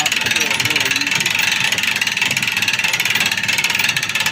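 Hand-cranked boat trailer winch, its ratchet pawl clicking rapidly and evenly as the handle is turned.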